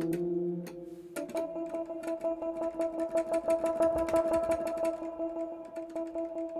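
Ableton Electric, a modelled Rhodes/Wurlitzer-style electric piano, sounding a held note that changes in tone about a second in, as its fork Colour setting shifts the blend of high and low partials. A fast patter of clicks runs over the note.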